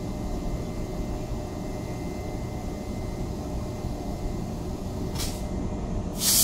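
General Electric E42C electric locomotive standing with its equipment running: a steady low rumble with a faint whine. A short hiss of compressed air comes about five seconds in.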